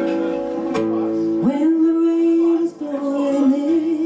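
Live acoustic guitar playing, with a woman's voice coming in about a second and a half in on a note that slides up and is held, then moves on to other notes.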